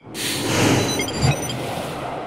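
Sound-design whoosh for an animated title transition. A rush of noise swells in over the first half-second, with a low hit about a second in, then slowly dies away.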